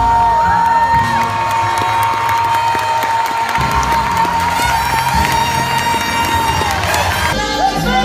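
A live jazz big-band performance with one high note held steadily over the band for about seven seconds. The note slides down and stops near the end, and the band comes back in. An audience cheers and whoops over the held note.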